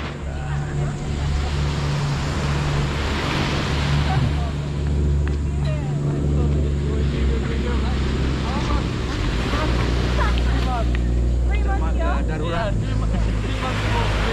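A steady low engine drone of boats offshore over waves washing onto the beach, with people talking briefly about ten seconds in.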